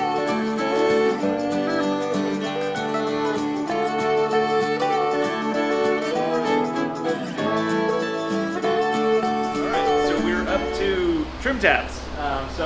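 Background music: an acoustic country or bluegrass-style tune with guitar and fiddle, held notes sliding in pitch.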